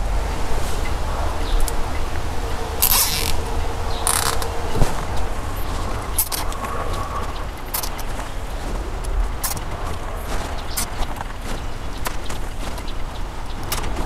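Nylon zip ties being ratcheted tight around spark plug wires: two short zipping pulls about three and four seconds in, with small clicks and rustles of handling throughout, over a steady low hum.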